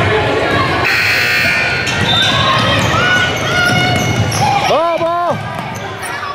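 Youth basketball game in a gym: a basketball bouncing on the hardwood floor, sneakers squeaking and spectators talking, with one drawn-out shout about five seconds in.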